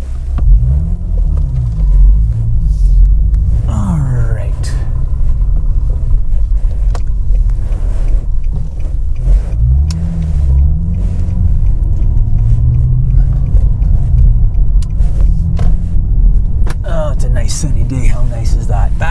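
Infiniti G37's 3.7-litre V6 pulling away from a stop and accelerating in the low gears of its six-speed manual, heard from inside the cabin as a low rumble. The engine speed rises and dips with the gear changes.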